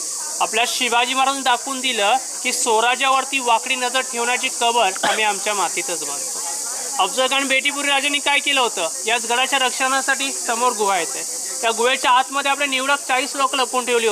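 A man's voice speaking continuously in Marathi, over a steady high hiss.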